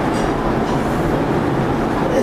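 Steady, loud rushing background noise with no speech, a constant hiss-and-rumble that also runs under the lecturer's voice.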